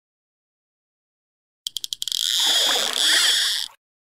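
Logo sound effect: after a silence, a quick run of sharp clicks about one and a half seconds in, then a hissing whirr that lasts nearly two seconds and cuts off suddenly.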